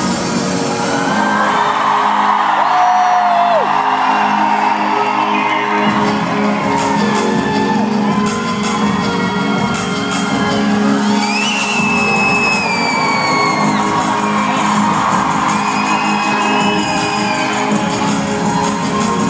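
Live pop concert music playing through the arena sound system, with the audience screaming and whooping over it. A few high screams or whistles rise and fall above the music.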